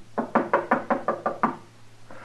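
A quick run of about eight sharp knocks on wood, roughly six a second, stopping about a second and a half in; a radio-drama sound effect.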